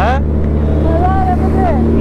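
Sport motorcycle engine running at steady revs while cruising in traffic, a continuous even drone.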